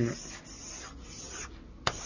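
Writing on a board: quick rubbing strokes for about a second and a half, then a single sharp tap near the end.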